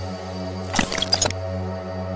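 Dark background score with a steady low drone, and a brief cluster of small clicks of a sound effect about a second in.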